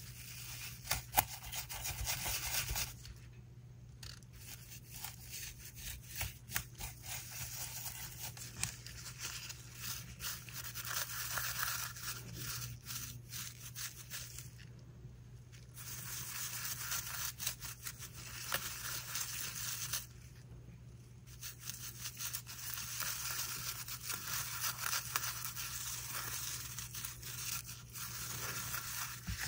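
Small paintbrush scrubbing pigment powder over the hard, bubble-textured surface of a cured resin coaster: the bristles rub in quick short strokes, stopping briefly three times.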